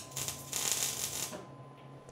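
MIG welding arc crackling as the wire feeds into the steel. It runs for about a second and a half and stops shortly before the end.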